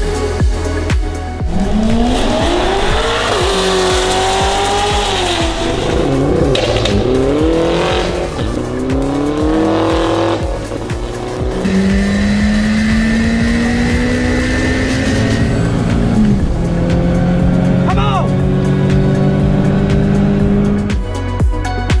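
Drag-racing car engines revving and accelerating hard, with tyre squeal, laid over a music track with a steady heavy beat. The engine pitch swings up and down in the first half, then climbs slowly through a long pull with a shift about two-thirds of the way in.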